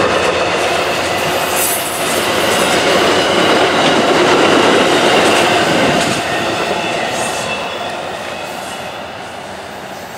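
Amtrak passenger train's cars rolling past at speed, steel wheels running on the rails. The sound fades from about six seconds in as the rear of the train moves away.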